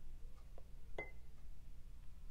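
A single light clink of metal pliers against a small glass dish of melted wax about a second in, ringing briefly, over a low steady hum.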